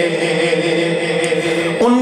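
A man's voice singing a naat, holding one long, drawn-out note with a slight waver. Near the end it moves up to a new note.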